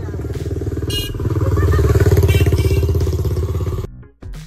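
Motorcycle engine running close by with a rapid, even firing beat, growing louder about a second and a half in, then cutting off suddenly near the end.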